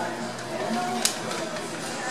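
Background murmur of a busy public room with faint distant voices, and a single sharp click about a second in.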